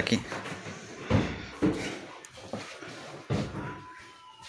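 A few sharp knocks and thuds from a large wardrobe bumping as it is carried up a wooden staircase: one about a second in, another shortly after, and a last one near the end. Voices murmur in between.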